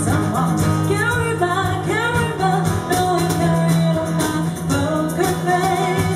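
Live acoustic pop band playing: vocalists singing into microphones over strummed acoustic guitars and a steady cajon beat.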